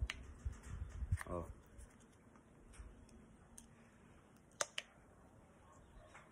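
Light clicks of a fuel rail and its fuel pressure regulator being handled, with a sharper pair of clicks about three-quarters of the way in.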